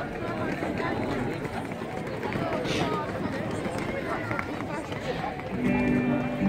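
Many people talking as they walk past on a busy pedestrian street, a steady mix of voices. Near the end, music with long held notes comes in.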